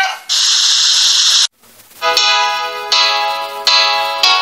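About a second of steady hiss, cut off abruptly, then after a short gap light cartoon background music begins with a run of distinct, sustained notes.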